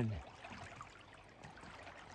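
Faint water sounds around a paddled canoe: gentle lapping and dripping from paddle strokes, a soft steady wash with small scattered splashes.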